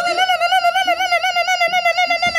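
A man vocalising an air-guitar solo: one long, high held note with a fast, even vibrato.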